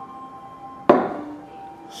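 A single sharp knock a little before halfway through, a hard object knocked against the faceting jig on its glass base as it is handled, with a short ringing decay. A faint steady hum with a few fixed tones runs underneath.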